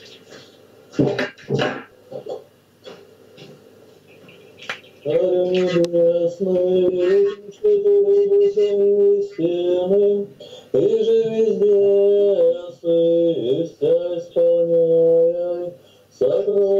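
A prayer being chanted, the voice sung in long held notes that move in steps, starting about five seconds in. Before it there are a few sharp knocks and rustles.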